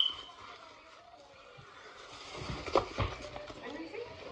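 Fabric bag being handled and shaken, with rustling and a few sharp knocks, the two loudest a little before and at the three-second mark. A brief high squeak at the very start.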